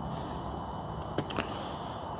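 Steady low background noise, with two faint short clicks close together a little over a second in.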